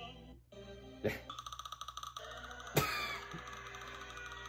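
Edited cartoon soundtrack: music broken by a sudden hit about a second in, then a fast stuttering repeat of about ten a second, and another sharp hit near the end.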